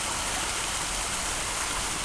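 Small garden pond waterfall: water spilling steadily over stacked rocks into the pond, a continuous even splashing rush.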